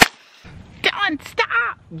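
A single sharp pop from a Roman candle firing a shot, right at the start, followed by a man's voice.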